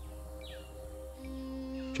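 Soft background music of long held notes, a lower note joining just over a second in, with a few brief bird chirps.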